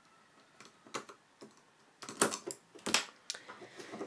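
Light plastic clicks and taps of a hook and rubber bands against the pegs of a plastic loom-band loom, irregular, sparse at first and louder and busier in the second half.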